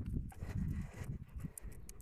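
Footsteps on asphalt as a person walks a German Shepherd on a leash, uneven soft thuds with a few light high clicks in the second half.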